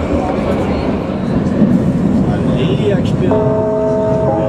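Vienna U-Bahn carriage with a steady low rumble. Near the end, a chime of several steady held tones starts up.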